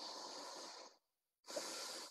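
A person breathing close to the microphone, two faint breaths about a second long each, the second starting about one and a half seconds in.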